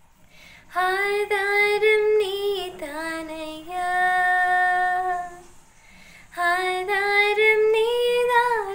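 A woman singing a gospel song solo and unaccompanied: a phrase ending on a long held note, a short breath pause, then a new phrase about six seconds in.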